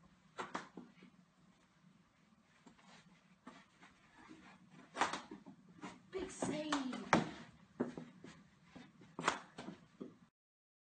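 Faint voices and a scattering of sharp knocks from a knee hockey game: mini sticks and ball striking during play.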